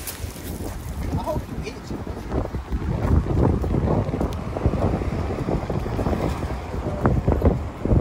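Wind buffeting the phone's microphone: a loud, low rumble that rises and falls.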